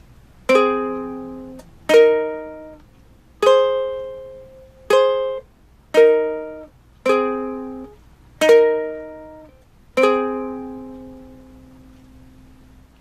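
Ukulele played as two-string chords, eight separate strikes alternating A-flat and E-flat, each left to ring and die away; the last one rings out near the end.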